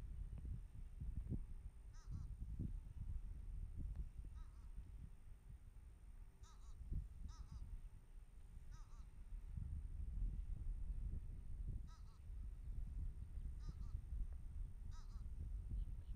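Gusty wind rumbling on an outdoor microphone, with about eight short honking bird calls at uneven intervals.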